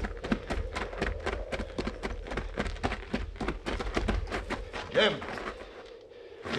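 Running footsteps on hard ground, a rapid string of quick steps, as a radio-drama sound effect. A short man's vocal sound comes about five seconds in.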